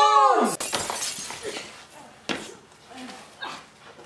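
Two people scream briefly with a falling pitch, cut off about half a second in by a sharp shattering crash like breaking glass, followed by scattered tinkles and clatters that fade over the next few seconds.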